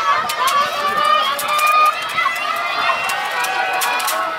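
Spectators at a track race shouting encouragement to the runners, several voices overlapping, with scattered sharp clicks.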